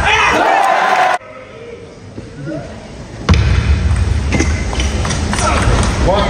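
Table tennis ball knocking back and forth in a rally, over arena crowd noise with spectators shouting. The sound drops away abruptly about a second in and comes back just as suddenly about two seconds later.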